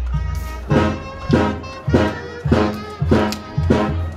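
Brass band music with a steady beat of about one and a half pulses a second, low bass notes on the beats under brass chords.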